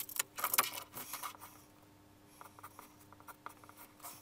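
A metal-strapped duplex power outlet picked up off the table and handled, its mounting strap and terminal screws clinking and rattling in a cluster through the first second or so. Faint pencil strokes on paper follow.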